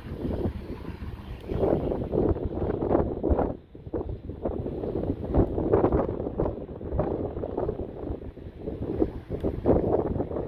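Gusts of wind buffeting the microphone, rising and falling irregularly, with a brief lull a little under four seconds in.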